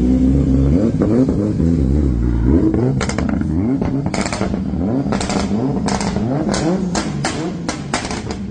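Drift car's engine revving in short blips, its pitch rising and falling, then from about three seconds in a rapid string of around ten loud, sharp exhaust cracks and pops, echoing in the garage.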